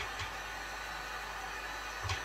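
Heat gun blowing a steady rush of hot air, drying the paint on a garden head.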